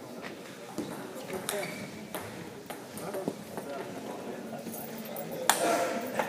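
Table tennis ball in a doubles rally: sharp clicks roughly every half second to second as the celluloid ball strikes the table and the rubber-faced bats. A louder burst comes about five and a half seconds in, over a murmur of voices in the hall.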